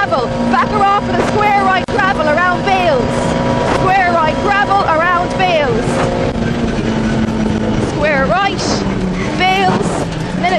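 Vauxhall Nova rally car's engine running hard at full throttle on a straight, heard from inside the cabin. Its steady note falls slightly from about six seconds in.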